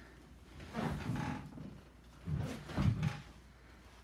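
Handling noises at a tabletop: two short bursts of scraping and rustling as painting supplies are moved, one about a second in and a longer one in the second half.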